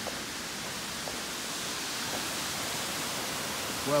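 Steady rush of water spilling through the gates of a river dam.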